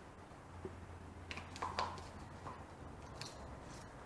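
A few faint clicks and light scrapes of a knife working against a paint cup as wet acrylic paint is scraped off it, mostly about a second and a half in, with one more tap near the end.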